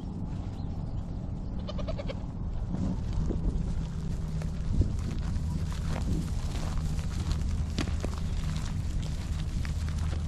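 A herd of Nigerian Dwarf goats on the move, with a short goat bleat about two seconds in. Under it runs a steady low rumble, with scattered sharp clicks in the second half.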